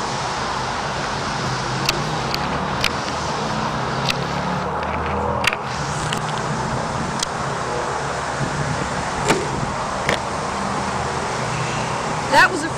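Steady traffic noise from a nearby road, with a few sharp clicks scattered through it.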